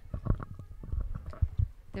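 Handling noise on a handheld microphone: a string of soft, irregular low thumps and rubs as the mic is shifted in the hand.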